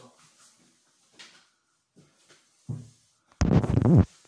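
A few faint rustles and a soft thud, then near the end loud rubbing and knocking as the recording phone is picked up and handled, a hand right over its microphone.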